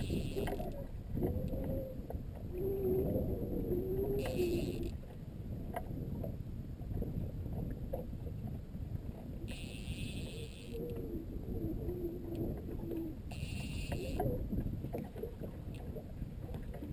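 Steady low rumble of wind and water on the microphone of a small fishing boat, with faint muffled voices. Three brief high buzzing bursts of about a second each come at about four, ten and thirteen seconds in.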